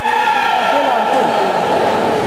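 Voices in a large, echoing sports hall: people talking and calling out, with no single clear speaker.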